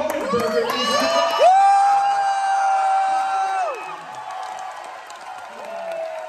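Audience cheering and whooping. One long held "woo" starts about a second and a half in and lasts about two seconds, then the cheering dies down to crowd noise.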